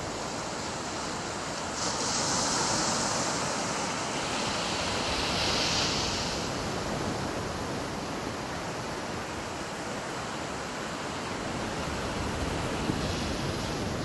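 Ocean surf washing onto a beach: a steady rush of breaking waves that swells twice, about two seconds in and again around six seconds.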